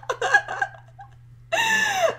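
A woman laughing in a few short bursts, then a brief pause, then her voice comes back about a second and a half in with a long held vowel.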